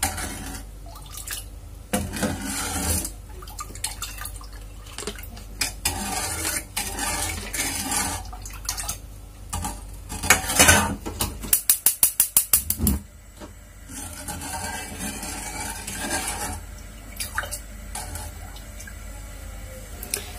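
A plastic spoon stirring and scraping cincau jelly mixture in a small stainless steel saucepan, with knocks against the pan. About twelve seconds in, a gas hob's igniter clicks rapidly, about seven clicks a second for a second and a half, as the burner is lit.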